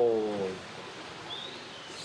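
The tail of a drawn-out spoken call falling in pitch, ending about half a second in. Then a faint steady outdoor background with one short high chirp near the middle.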